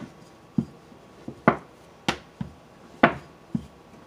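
A fondant rolling pin rolled back and forth over fondant on a silicone baking mat, knocking against the mat at each pass: a string of separate thumps and sharper knocks, roughly one every half second to second.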